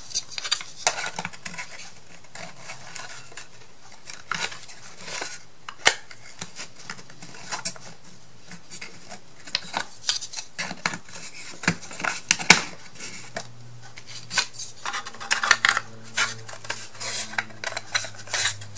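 Thin laser-cut wooden pieces clicking, knocking and scraping against each other as a small drawer is fitted together by hand, tabs pushed into slots. Two sharper knocks stand out, about six seconds in and again about twelve seconds in.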